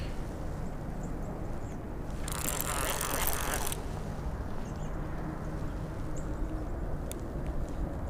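Baitcasting fishing reel being cranked, a low mechanical whir under a steady background, with a brief rushing noise a little past two seconds in that lasts just over a second.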